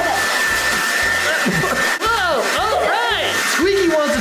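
Handheld electric hair dryer blowing steadily, with background music and laughing voices over it.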